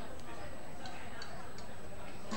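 Indistinct background voices and room noise, with a few faint light clicks.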